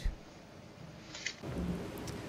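A pause between speakers on a courtroom audio feed: a low, even hiss, joined by a low rumble about halfway through.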